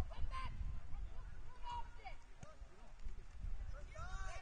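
Distant shouts and calls from players on a soccer pitch: short cries about half a second in, near the middle and again a little later, over a steady low rumble.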